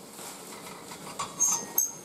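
Omelette sizzling steadily in a nonstick frying pan, with two short scrapes of the spatula against the pan in the second half as the omelette is folded over.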